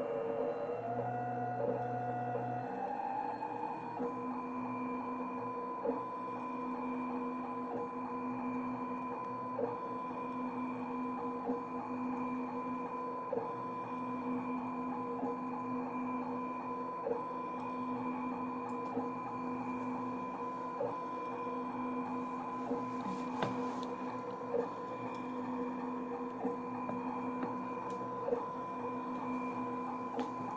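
ClearPath servo motors of a home-built egg-painting CNC machine whining steadily as they turn the egg and swing the marker through a pattern of arcs, with a soft tick about every two seconds. One tone climbs in pitch during the first few seconds, then the whine holds steady.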